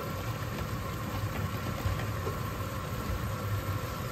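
A steady low hum with an even hiss above it, unchanging throughout.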